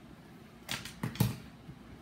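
Handling noise from a plastic wireless bodypack transmitter: a few short scratches and one sharp click about a second in.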